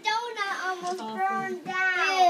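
A child's high-pitched voice in sing-song calls: several short notes that glide up and down.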